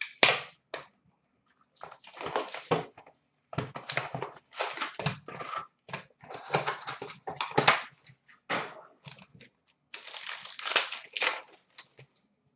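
A box of hockey cards being torn open and its foil-wrapped packs pulled out and handled: irregular crinkling and tearing rustles with a few sharp clicks, coming in spells separated by short pauses.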